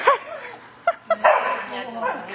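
Dog barking excitedly: a high yip near the start, then several short sharp barks about a second in.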